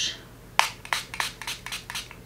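Makeup setting spray pump bottle spritzed onto a brush to wet it: a quick run of short hisses, starting about half a second in.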